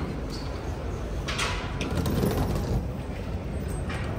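Elevator car doors sliding. A short hiss comes about a second and a half in, and a sharp knock comes near the end, over the steady low rumble of a busy terminal hall.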